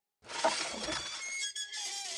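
Cartoon sound effect: a glassy, crackling, shatter-like noise with high ringing tones, starting suddenly about a quarter second in and running for about two seconds.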